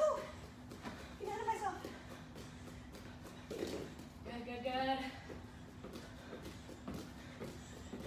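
Light thuds of bare feet landing on rubber gym matting during side-to-side hops, scattered and uneven. Two brief stretches of quiet, unclear talking and a faint steady hum sit underneath.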